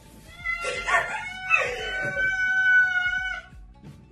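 Domestic cat yowling. A short wavering call comes first, then one long held call that stops about three and a half seconds in.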